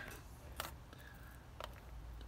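Two faint clicks about a second apart over a quiet hum: fingers pressing the COOLER and HOTTER buttons together on a White-Rodgers Intelli-Vent water heater gas control to enter temperature setting.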